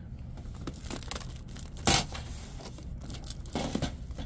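Stack of thin plastic star-shaped bowls being handled on a store shelf: light plastic clicks and rustling, with one louder, brief crackle about halfway through.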